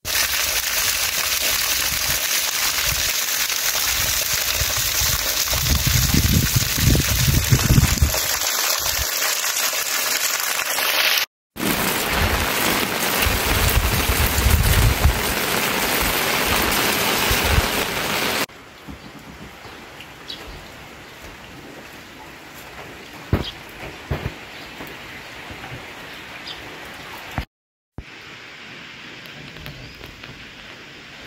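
Heavy rain falling, loud and close, with bursts of low rumble for the first two-thirds. It then drops to a quieter steady rain with a few sharp drips.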